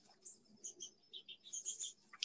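Faint bird chirping outdoors: a run of short, high chirps, coming closer together in the second half.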